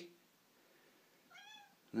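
Domestic cat giving one short meow about a second and a half in.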